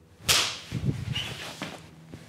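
A sharp whip-like swish about a third of a second in, trailing off over the next second and a half.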